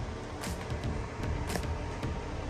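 A low, steady rumble with faint background music, and two brief clicks, the first about half a second in and the second about a second and a half in.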